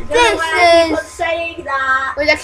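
A young boy singing wordless nonsense syllables in a high voice, holding a long note and then a couple of shorter ones.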